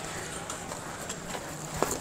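Faint footsteps on a paved street, a few light irregular taps over a low, steady outdoor background.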